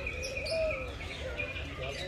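Mixed aviary birds calling: high-pitched chirping together with lower cooing.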